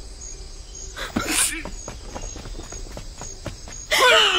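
A dog barks once about a second in, followed by a string of quick, light footsteps.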